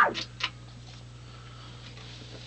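Delay pedal feedback dying away: after the swooping oscillation stops, two fading echo repeats tick within the first half second, then only a steady low hum and hiss remain.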